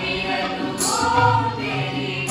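A mixed chorus of men and women singing an Indian folk song in unison, accompanied by harmonium and tabla, with a bright jingling percussion stroke less than a second in.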